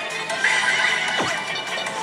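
Pachinko-hall din of pachislot machine music and electronic sound effects, with one falling electronic swoop near the middle.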